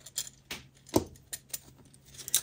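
A few faint, light metallic clicks, the strongest about a second in: the small metal pins of a pegboard blocking set being handled.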